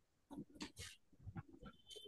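Near silence with faint, scattered classroom noises: short rustles and soft knocks, and a brief faint high beep near the end.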